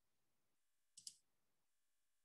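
A faint computer mouse click, a quick double snap about a second in, in near silence.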